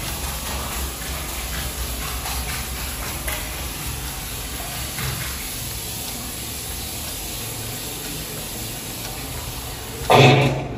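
Bathroom sink tap running steadily, water splashing over hands being washed in the basin.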